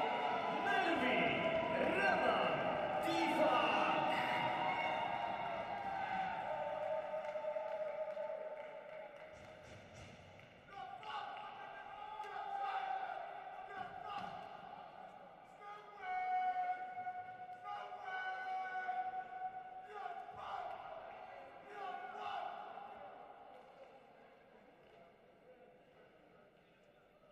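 Voices echoing in a large sports hall for the first several seconds, fading out, then music with held notes playing through the hall, with a few scattered thumps.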